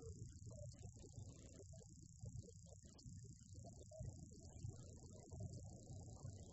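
Near silence: a steady high hiss with faint, choppy, garbled low sounds underneath.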